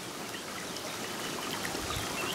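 Water running steadily down a small, shallow earthen irrigation channel, trickling over soil and stones.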